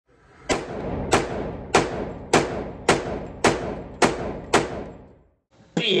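Eight sharp bangs, evenly spaced about 0.6 s apart, each ringing out briefly. Guitar music starts just before the end.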